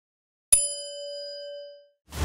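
A single bell-like ding sound effect about half a second in, with several ringing tones that die away over about a second and a quarter: the notification-bell chime of a subscribe prompt.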